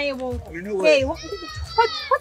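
Voices talking, with a high-pitched voice drawing out a long exclamation in the second half.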